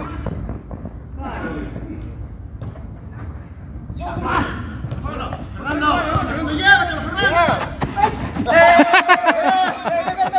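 Men shouting and calling out during a football game, getting louder and more crowded from about halfway through, with a few short thuds like the ball being kicked. A low rumble on the microphone stops near the end.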